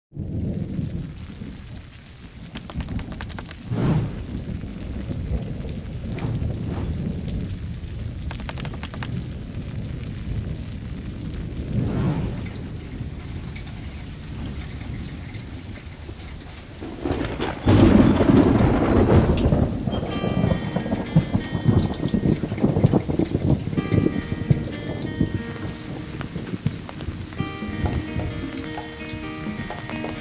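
Steady rain falling, with several low rolls of thunder; the longest and loudest rumble comes a little past halfway. Soft music with held notes comes in over the rain about two-thirds of the way through.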